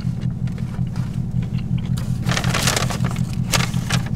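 Steady low hum of a car idling, heard inside the cabin, with a brief rustle a little past halfway and a single sharp click soon after.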